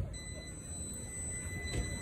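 A steady, high-pitched electronic beep held unbroken for about two seconds over a low background rumble.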